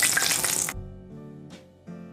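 Hot peanut oil sizzling in a skillet, frying, cutting off abruptly under a second in. Soft closing music with piano-like notes follows.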